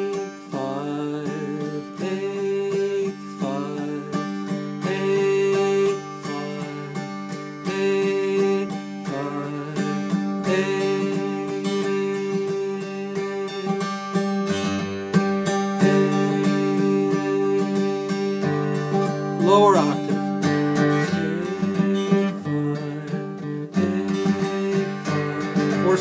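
Acoustic guitar in open G tuning, no capo, playing a slow melody in G Mixolydian. Strummed chords ring on under held melody notes.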